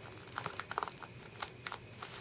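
Pieces of a model skull clicking and tapping against each other as they are moved by hand: about half a dozen small, irregular clicks, a few bunched together just before the middle.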